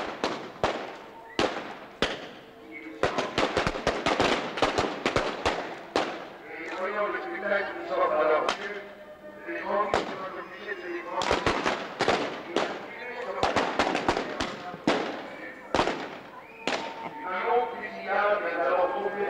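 Rapid gunfire from a staged shootout, many shots in quick clusters, with voices in the pauses between volleys.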